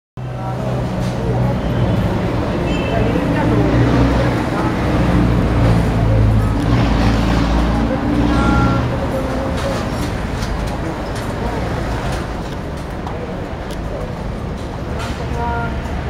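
City street traffic: a vehicle engine's low rumble close by, loudest for about the first nine seconds and then easing, with scattered voices in the background.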